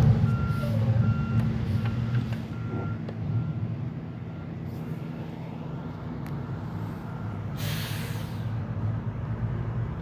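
Garbage truck engine running steadily with its backup alarm beeping at an even rate for the first few seconds, then a short burst of hissing air about eight seconds in.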